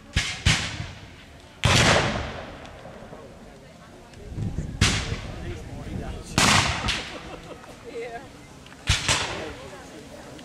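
Black-powder muskets firing in scattered single shots, about eight in all and some in quick pairs, each followed by a long echoing tail.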